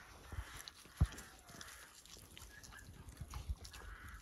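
Lion cub feeding on a raw carcass, chewing and tearing at meat and bone, with irregular wet clicks and one louder thump about a second in.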